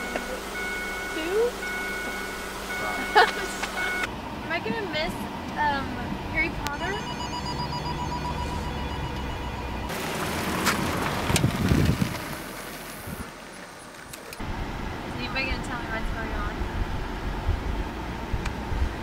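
A car passes close by, its sound swelling and falling away about ten to twelve seconds in. Then comes the steady low rumble of riding inside the moving car, with voices over it.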